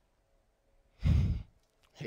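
A man sighing out a breath close into a handheld microphone, a single half-second exhale with a heavy low thump on the mic. A short falling vocal sound begins just at the end.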